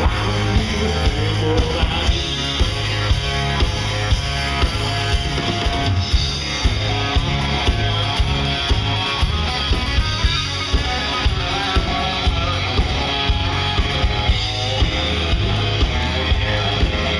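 A live country band playing: acoustic and electric guitars, bass guitar and drum kit, with a steady beat of about two drum hits a second.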